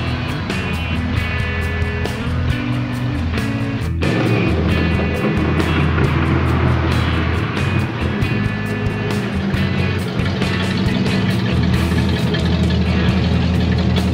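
Engines of classic American cars driving slowly past at close range: first a 1950s Chevrolet truck, then, after a cut about four seconds in, a Cadillac. Music plays steadily over the engine sound.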